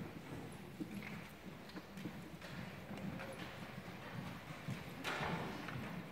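Quiet hall with scattered light knocks and shuffling as a children's brass band settles and lifts its instruments, with a brief louder rustle about five seconds in; no music is playing yet.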